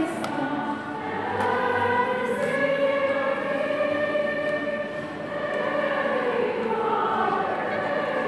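Choir singing a hymn in long, held notes.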